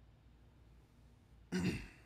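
Low room tone, then a man clears his throat once, briefly, about a second and a half in.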